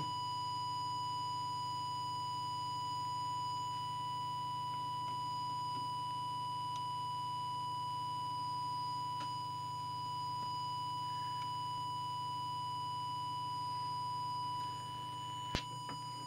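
Steady 1 kHz sine test tone from an audio oscillator, feeding the CB transmitter to set its audio deviation, held unbroken over a low hum, with a short click near the end.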